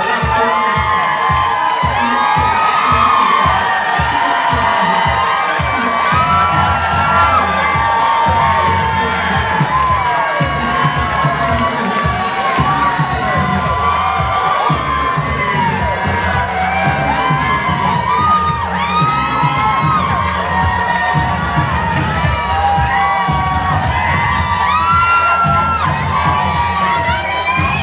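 Audience cheering, with many high-pitched whoops and screams, over music with a steady beat.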